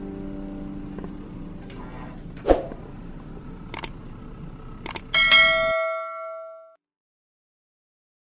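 Subscribe-button animation sound effects over soft piano music that fades out. There is a sharp hit about two and a half seconds in, then two quick mouse-click sounds about a second apart. After that a notification-bell ding rings out for about a second and a half and stops, leaving silence.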